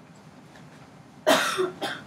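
A person coughing twice: a loud cough about a second and a quarter in, then a shorter second cough.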